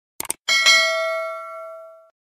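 Subscribe-button animation sound effect: a quick mouse double-click, then a bright notification-bell ding that rings out and fades over about a second and a half.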